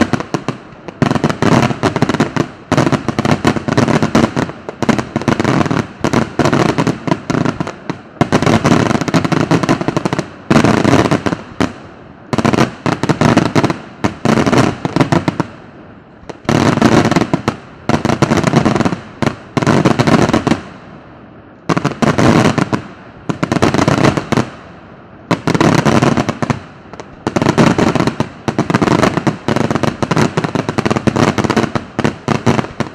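Daylight fireworks display: loud, rapid volleys of shell bursts and firecracker bangs in clusters of about a second, each dying away briefly before the next cluster starts.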